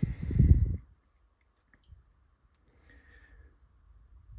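Hands handling a drill bit and small carburetor parts: a low rumble in the first second, then a few faint clicks.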